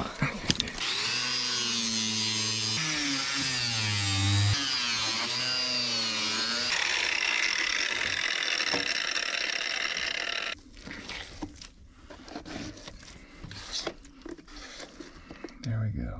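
Corded electric jigsaw cutting into a PVC sewer pipe, its motor running for about ten seconds with a pitch that wavers up and down as the blade loads, then cutting off suddenly. Faint knocks and scrapes of handling follow.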